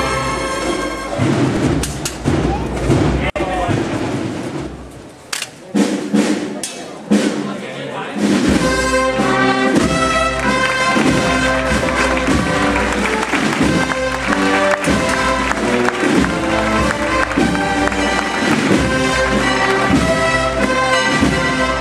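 A brass band playing a processional march. About a second in, the music gives way to crowd voices and a few sharp knocks. The band strikes up again with a steady beat about eight seconds in.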